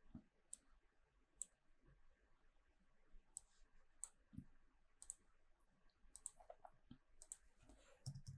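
Faint, scattered computer mouse clicks, several single clicks spaced irregularly about a second apart, over near silence.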